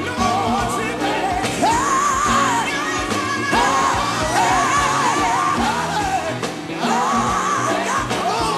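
Live gospel music: a male lead singer holds long, wavering high notes over a band keeping a steady beat.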